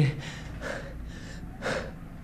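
A person breathing audibly: a few breaths, the loudest one near the end.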